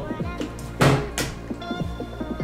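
A partly filled plastic water bottle flipped onto a wooden table lands with a loud knock, then a second knock as it tips over onto its side: a missed bottle flip. Background electronic music with a steady beat plays throughout.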